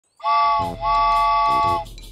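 Cartoon train whistle, a chord of steady tones blown twice: a short blast, then a longer one, over a music beat.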